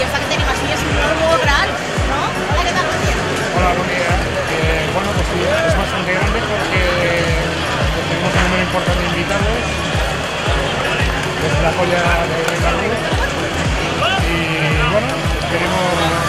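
Music with a steady beat, over the chatter of a crowd.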